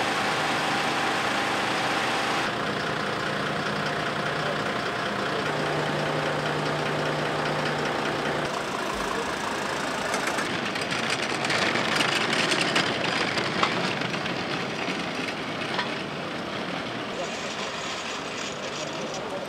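Emergency vehicles' diesel engines idling and running, with voices in the background; the sound shifts at several cuts. From about ten seconds in it grows louder and rougher as a fire brigade van runs close by.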